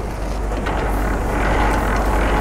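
Semi-trailer landing gear (dolly legs) being cranked by hand, its gears turning in a steady mechanical whir that builds a little towards the end, over the low steady rumble of an idling truck engine.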